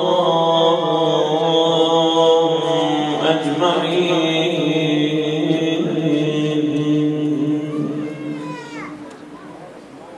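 A man's voice chanting a devotional recitation into a microphone in long held melodic notes, fading away about eight to nine seconds in.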